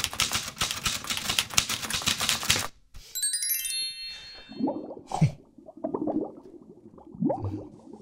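Rapid clacking of a manual typewriter's keys for about two and a half seconds, followed by a short, bright tinkling chime sound effect.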